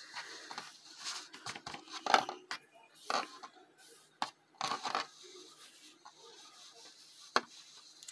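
Close-up handling sounds of crocheting cotton yarn with a crochet hook: scattered soft rustles and light taps as the hands work the yarn and brush the surface, with a sharp tick near the end.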